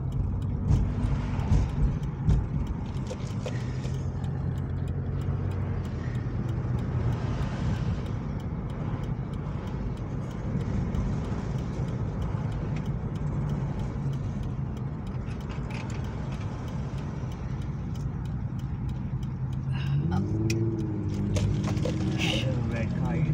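Car engine and road noise heard from inside the cabin while driving: a steady low hum.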